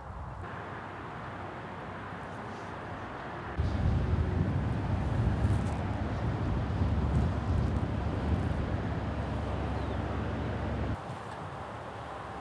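Strong wind buffeting the microphone: a steady wind hiss that turns into a louder low rumble about three and a half seconds in and drops back about a second before the end.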